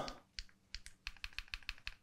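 Laptop keys tapped in a quick run of about a dozen light clicks, paging back through presentation slides.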